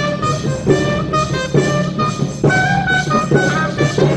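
A student concert band of flutes, clarinets and other wind instruments playing a piece under a conductor, with held notes and a new note or chord about every second.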